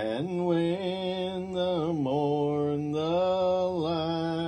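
A man singing a hymn solo and unaccompanied, drawing out each syllable in long held notes, with a short break and change of pitch about two seconds in.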